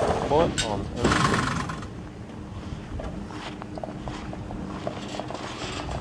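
Airboat hull sliding back off its trailer rollers onto grass as two men push it, with a short scraping rush about a second in, over a steady low hum.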